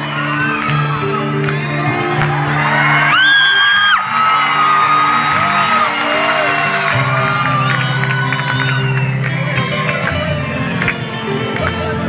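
A live Andean folk band plays held chords through a theatre sound system while the audience cheers, whoops and whistles over the music.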